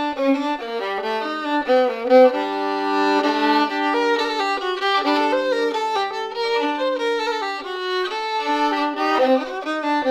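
Solo violin, cross-tuned DGDG, playing a folk waltz in G minor, with two notes often bowed together and a low open-string drone held under the melody in places.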